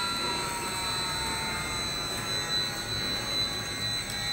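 VFD-driven extruder motor running with cooling fans: a steady whirring hum with thin high whines whose pitch dips slightly during the first couple of seconds and then fades.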